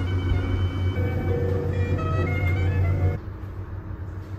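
Steady low hum of an elevator car in motion, with scattered thin higher tones over it; it cuts off abruptly about three seconds in, leaving a quieter hall.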